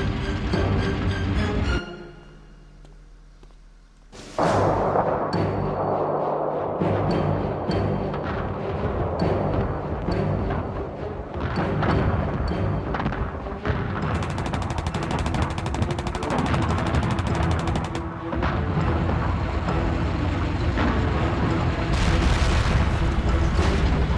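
Background music mixed with battle sound effects of gunfire and booms. The sound drops away briefly about two seconds in, then comes back dense with rapid shots and impacts.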